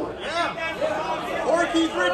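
Indistinct talk: several people chattering, with no clear words.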